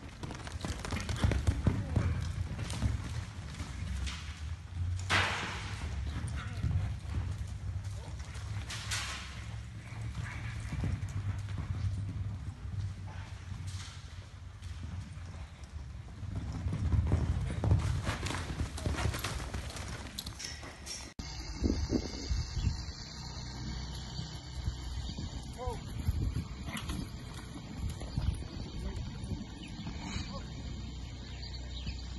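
A barrel-racing mare galloping the barrel pattern on arena dirt, her hoofbeats falling in a quick, uneven run of low thuds as she drives between and turns around the barrels. The background changes abruptly about two-thirds of the way through.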